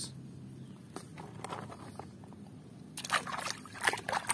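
Water splashing and sloshing in a plastic bucket as a hand swishes a plastic toy through it, starting about three seconds in. A few faint clicks come before it.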